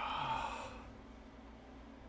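A man's breathy exhale like a sigh, lasting under a second, followed by faint room tone.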